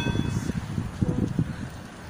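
Wind rumbling on a phone's microphone as it is carried along on a moving bicycle, with road traffic noise underneath. A held, several-toned note dies away in the first half-second.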